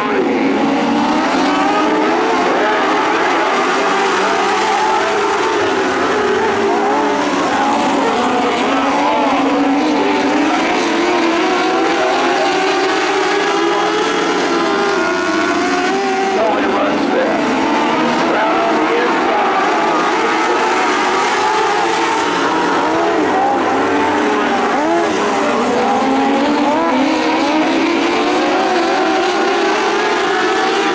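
Several dwarf race cars' motorcycle engines running together, their overlapping pitches rising and falling as the cars accelerate and lift around the track.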